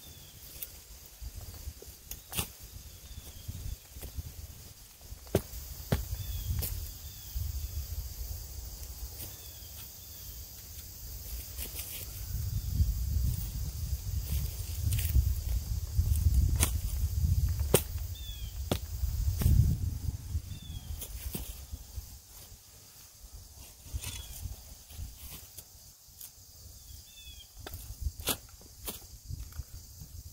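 A spade driven repeatedly into grassy soil and roots: sharp chops and knocks at irregular intervals, with a low rumble through the middle stretch.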